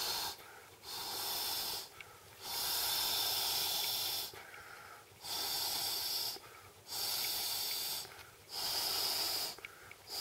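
Breath blown by mouth into the valve of an Intex vinyl air mat, in long hissing puffs of one to two seconds each with short pauses for breath between, about five in all.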